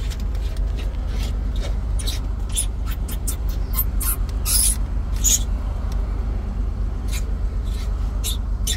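Steady low rumble with many scattered light clicks and scrapes, as of hands working at plastic centre-console trim.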